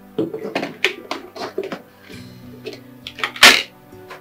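Plates and insulated food pots clinking and knocking on a dining table as a meal is set out, over soft background music, with one louder clatter about three and a half seconds in.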